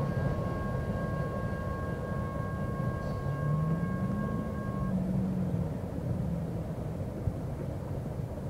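Low rumble of a freight train moving away, with a steady high two-note tone over it that cuts off suddenly about five seconds in.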